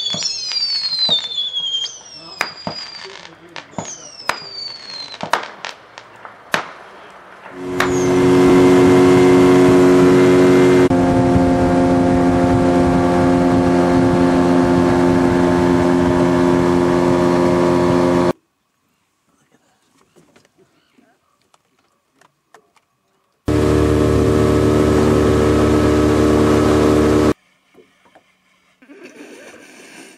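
Fireworks: a few falling whistles and sharp pops at the start, then scattered cracks. Then an outboard motor runs at a steady speed, loud and even, cutting off abruptly; after a near-silent gap it is heard again for a few seconds and cuts off again.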